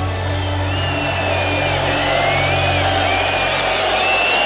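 Live rock band with electric guitars and bass holding sustained notes at the close of a song, with high gliding tones over the top.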